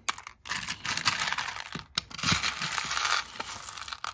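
Hands rummaging through a plastic tub of buttons, the buttons clicking and clattering against each other in a dense run of small clicks, with a brief pause about halfway through.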